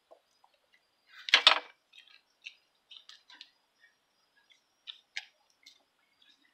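A goat feeding on shaved carrots from a plastic feeder bucket: scattered small crunches and clicks, with one loud knocking clatter about one and a half seconds in.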